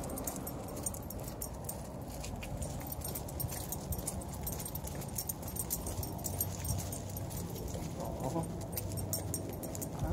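A dog's metal chain collar jingling with quick, light clinks as the dog trots along on a leash.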